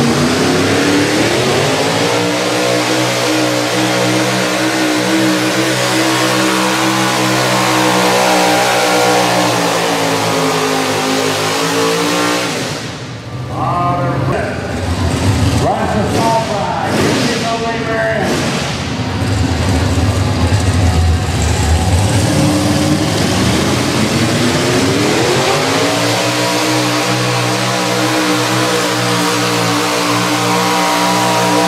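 Mini rod pulling tractors' engines on a sled pull. The first engine revs up over about two seconds, is held high under load for several seconds and winds down about a third of the way in. Near the end a second mini rod's engine revs up and holds at high revs as it pulls.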